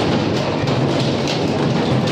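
JCB backhoe loader running while its bucket crushes and topples a sheet-metal shop stall, with loud crunching and clattering of metal sheets in several jolts over a low engine hum.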